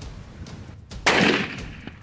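A single rifle shot about a second in, sudden and loud, fading over about half a second. It is a hunting shot striking a Cape buffalo bull.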